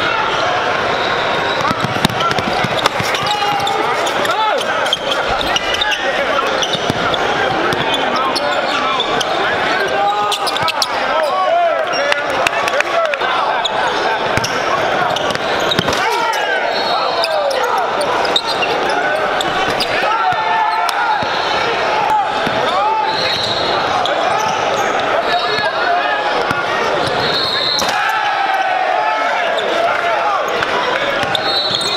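Live court sound of a basketball game in a gym: a basketball bouncing on the hardwood floor with sharp knocks, under many voices talking and shouting around the court, echoing in the hall.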